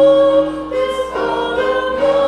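A congregation singing a hymn together with piano accompaniment, holding long notes, with a brief break between lines about a second in.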